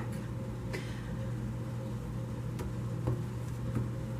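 A deck of tarot cards being shuffled by hand: a few soft, scattered clicks and taps over a steady low hum.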